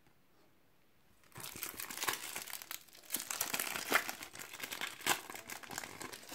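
Foil wrapper of a Panini FIFA 365 trading-card packet crinkling and crackling as it is handled and opened. It starts about a second in, with dense crackles to the end.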